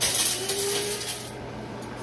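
A brief hiss that starts suddenly and fades after about a second, with a faint steady tone under it.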